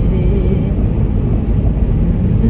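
Steady road and engine noise inside a moving car's cabin, loudest in the low range and unbroken throughout.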